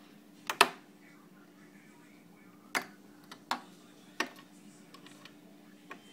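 Sharp clicks and knocks from a hand working at a corner bracket inside a table's frame: a double knock about half a second in, the loudest, then single knocks at roughly three, three and a half and four seconds.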